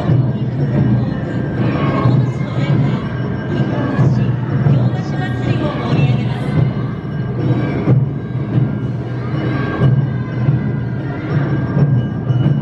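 Awa odori festival music from a passing dance troupe: drums keeping a steady beat with higher pitched instruments sounding over it, and voices mixed in.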